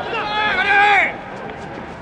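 Long, high-pitched shouted calls from players on a baseball field that break off about a second in, leaving quieter open-air background.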